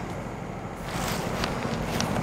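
Steady outdoor background noise, a low rumble with a hiss of wind on the microphone, growing a little louder about a second in, with faint soft taps of footsteps as the camera is carried.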